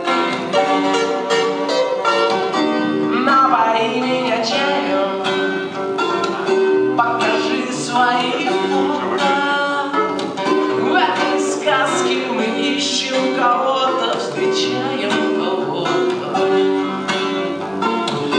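Live 12-string acoustic guitar strummed and picked in a steady rhythm, with a man's voice singing over it at times.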